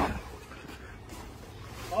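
A man's voice exclaiming right at the start and speaking again near the end, with a quiet stretch of faint, steady background noise between.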